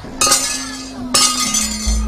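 Keprak, the metal plates hung on a wayang puppet chest and struck by the dalang, clanging twice, about a quarter second and a second in. Each strike is a bright metallic crash that rings on. Under them runs a steady low tone, and a deep thud comes near the end.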